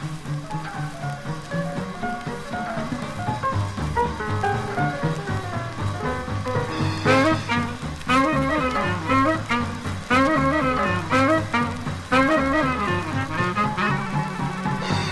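Swing big band playing. About seven seconds in the full band comes in louder with short riffs repeated roughly once a second.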